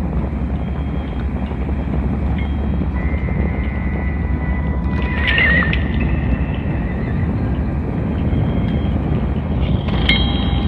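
Live ambient electronic improvisation on synthesizers and effects: a dense low drone under a wash of noise and held high tones, with a brief warbling, wavering tone about five seconds in.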